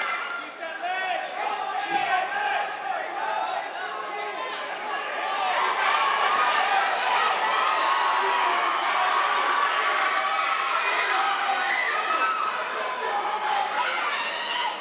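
Crowd of spectators shouting and cheering at a cage fight, many voices overlapping, growing louder about halfway through. A single dull thump sounds about two seconds in.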